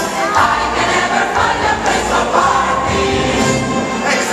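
Large choir singing with instrumental accompaniment at a Christmas cantata, picked up live by a small camcorder's microphone in a theatre.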